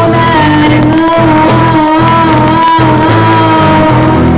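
Amateur live rock band playing a slow blues: a woman's voice holds one long, slightly wavering sung note over bass, drums and electric guitar. Loud, poor-quality recording.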